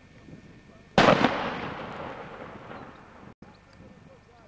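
A single loud explosive bang about a second in, its echo rolling off across the open valley and dying away over about two seconds.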